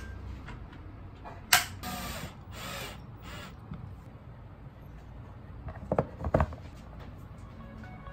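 Hard objects being handled: a sharp click about a second and a half in, a few short scrapes, then two knocks around six seconds in, over faint background music.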